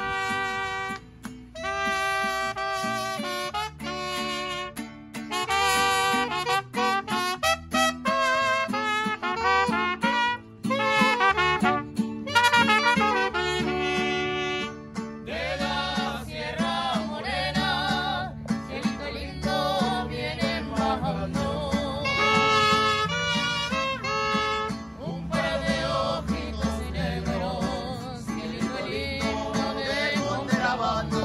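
Mariachi band playing continuously, with saxophone and trumpet carrying the melody.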